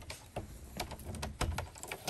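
Keys on a lanyard clicking and rattling in a quick, uneven run of small clicks as they are readied at a wooden door's lock.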